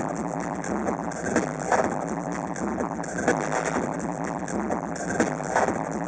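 Electronic dance music played by DJs through a club sound system, heard from the room.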